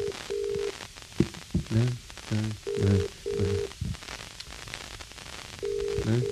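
British telephone ringing tone heard down the line on an outgoing call: double rings about every three seconds, three times. The call is ringing out unanswered. Faint voice or music fragments come between the rings.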